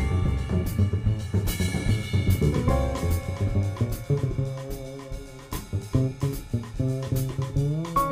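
Live jazz piano trio of acoustic grand piano, upright double bass and drum kit. The drums are busy at first, then thin out about three seconds in as pitched piano and bass notes come forward.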